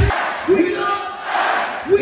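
Large festival crowd shouting in unison while the beat drops out, with two loud shouted calls about a second and a half apart.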